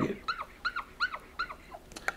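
Dry-erase marker squeaking on a whiteboard as a zigzag line is drawn: about five short squeaks, each rising and falling in pitch, roughly three a second.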